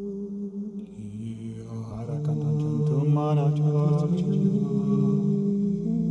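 Layered, looped vocal drones from a live loop recording of intuitive chanting, holding steady notes, with a lower note joining about a second in. A wavering wordless sung line rises over the drones about two seconds in and fades out after about four and a half seconds.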